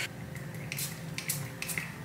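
Pump mist spray bottle of heat-protectant hair mist giving several short spritzes, each a brief hiss.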